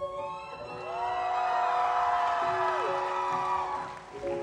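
A female singer's voice holds one long sustained note that slides down near the end, over steady sustained keyboard chords in a live pop ballad. Audience cheering and whoops rise under the held note.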